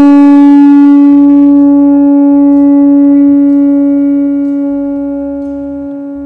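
Conch shell trumpet blown in one long, steady note, loud at first and slowly fading over the last few seconds.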